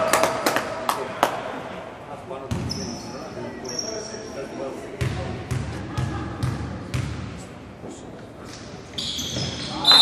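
Basketball bouncing on a hardwood gym floor, a run of dribbles about half a second apart in the middle, as a player works the ball at the free-throw line. Short high sneaker squeaks on the court come around the middle and again just before the end.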